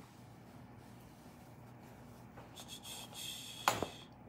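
Quiet room with soft rustling of cloth as an apron is taken off, then a single sharp thump near the end.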